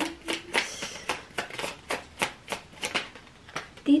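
Tarot cards being shuffled by hand: a quick, irregular run of card clicks and flicks, several a second.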